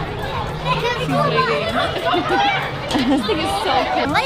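Overlapping chatter of several voices, children's among them, with no single clear speaker.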